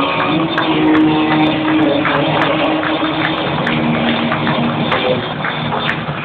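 Live rock band playing: electric guitar holding long notes over drums and cymbal hits.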